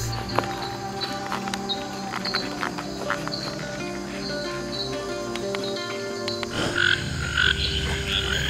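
Night chorus of tropical frogs in a swamp: short calls repeat through it, and a denser chorus of higher calls swells in near the end. Low background music runs underneath.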